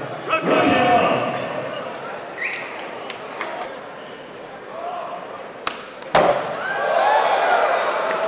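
Skateboard popped on flat concrete: a sharp tail snap, then the board landing about half a second later, followed by the crowd's voices rising in reaction.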